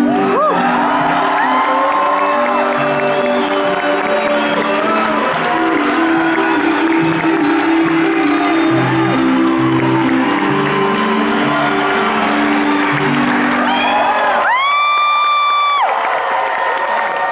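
Acoustic guitar playing an instrumental outro, with a crowd cheering and whooping over it. Near the end the guitar stops and a single long, high-pitched whoop rings out.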